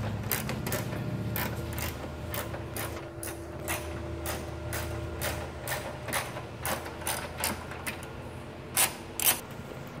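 Hand ratchet wrench clicking in irregular runs as 13 mm bolts are backed out of a BMW E39's hood hinge, with two sharper clicks near the end, over a steady low shop hum.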